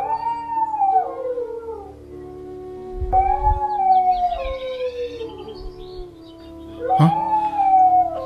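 A dog howling three times over sustained background music. Each howl is a long wail that rises briefly and then falls in pitch.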